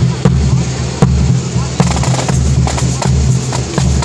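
Marching band playing: a pulsing low brass bass line with sharp drum hits over it.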